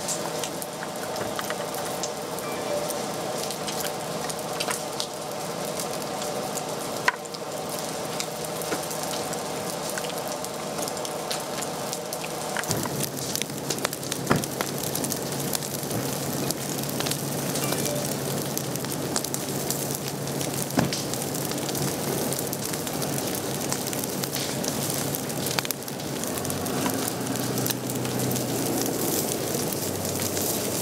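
Wildfire burning through brush and downed logs: a steady hiss of flame with frequent sharp crackles and pops. A steady low hum runs beneath it.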